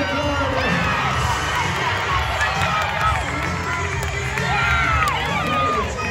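Rodeo crowd in a large indoor arena cheering and yelling for a barrel racing run, many voices shouting at once over a steady low rumble.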